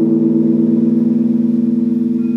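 Electric guitar with a chord left to ring, sustaining steadily and evenly with no new notes picked.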